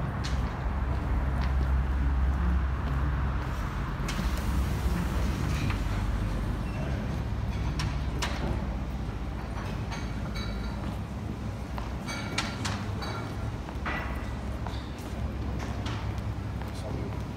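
Steady low outdoor rumble, then an automatic sliding glass door opening about four seconds in, giving way to the quieter, echoing background of a large hard-floored hall. Scattered clicks and knocks of footsteps on prosthetic legs and of the handheld gimbal run throughout.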